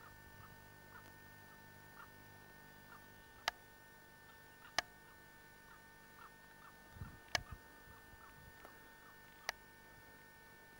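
Faint steady hum and whine of a camcorder's own running mechanism, with four sharp clicks spread through the middle and a dull low thump a little past halfway, typical of the camera being handled.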